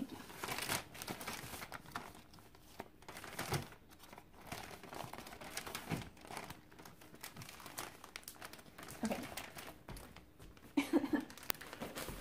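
Plastic zip-top bags crinkling and rustling in irregular bursts as they are handled and pulled open.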